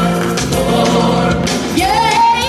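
Gospel music with singing; near the end a child's voice slides up into a long, high held note.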